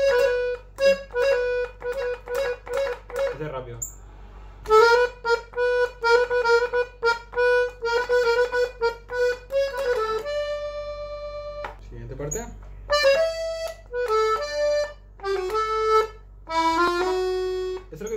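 Hohner piano accordion played on the treble keys: a melody in quick, short repeated notes, with a brief break about four seconds in and one long held note about ten seconds in, then further phrases.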